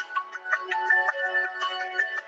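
Music from a promotional video: a busy melody of quick, bright, pitched notes, with no low bass.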